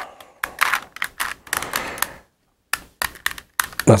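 A plastic Rubik's Cube being turned by hand: a quick, irregular run of clicks and clacks as the faces are twisted, with a brief pause about halfway through.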